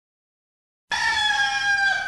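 Silence, then about a second in one drawn-out pitched animal call that falls slightly in pitch and lasts about a second.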